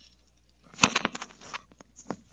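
Handling noise close to the microphone: after a brief dropout, a cluster of sharp clicks and short crackling rustles.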